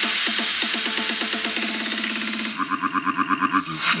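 Electronic dance music played through a Hertz DCX 165 6.5-inch two-way coaxial car speaker running in free air. A dense, rising build with a steady beat breaks about two and a half seconds in into a fast stuttering pulse, about eight a second, that runs up to the drop near the end.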